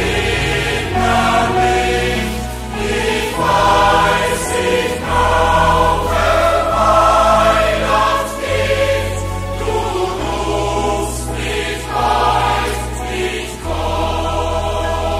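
A choir singing a Christian hymn in a live recording, over sustained low accompaniment notes that change every second or two.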